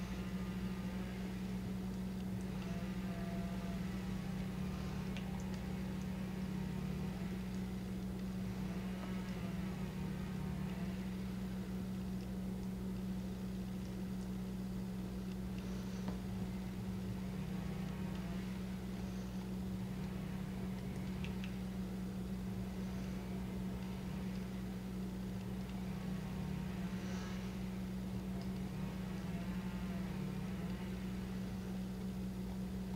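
A steady low hum with no change in level, and a few faint soft taps over it.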